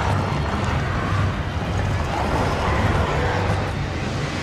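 A film action sound mix of mounts running across sand: a loud, steady, dense rumble with hiss above it and music faintly underneath.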